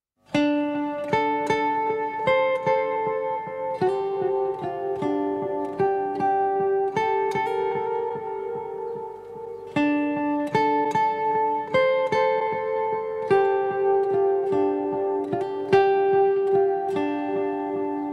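Acoustic guitar picking a repeating arpeggio of single notes, about two or three a second, each ringing on into the next. This is the instrumental intro of the song before the voice comes in.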